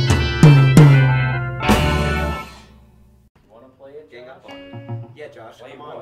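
A guitar-band song ends: a few last strummed guitar chords with drums, the final one ringing out and dying away about two and a half seconds in. Then quiet talking follows.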